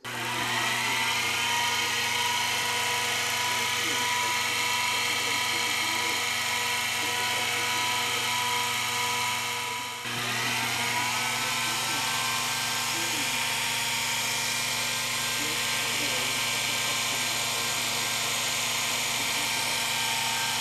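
Benchtop mini milling machine's motor spinning up and then running at steady speed. About halfway through it briefly drops in speed and winds back up.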